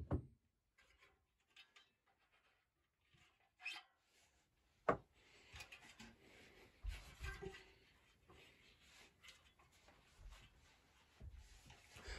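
A nylon-faced hammer tapping a bearing tool right at the start, seating a bearing into an aluminium bike hub. Then quiet workbench handling: a sharp knock about five seconds in, followed by faint rustles and low bumps.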